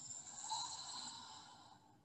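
A woman's slow, deep exhale through the mouth: a soft breathy hiss that swells briefly and then fades away over about two seconds.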